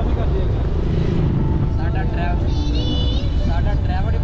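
A car driving along a road, with a steady low rumble of road and wind noise throughout. Voices are heard faintly over it.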